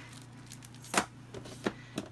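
Handling noise from paper and a plastic storage drawer: a sharp click about a second in and a lighter tap a little later, over a steady low hum.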